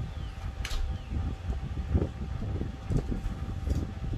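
A peeled-off adhesive transfer strip being handled and crumpled, giving a few sharp crinkles and ticks over a low rumble.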